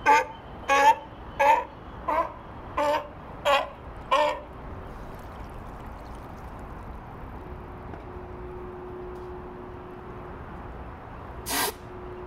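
California sea lion barking: seven short, loud barks about two thirds of a second apart over the first four seconds, then one more bark near the end.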